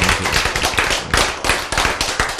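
A group of people clapping their hands, a dense run of many quick, uneven claps.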